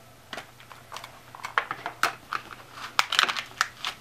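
Clear plastic clamshell package being pried open by hand: a run of sharp plastic clicks and crackles, sparse at first and coming thicker in the second half.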